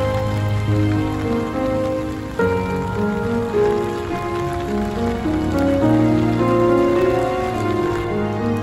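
Steady rain falling on wet paving, with soft instrumental background music holding slow, sustained notes over it.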